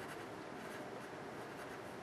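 Dixon Ticonderoga wooden pencil writing on paper: faint, short scratching strokes as figures are written.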